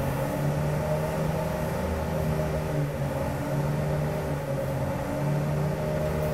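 A steady low drone of a motor or engine running, its pitch wavering slightly; an intrusive background noise loud enough to halt the talking.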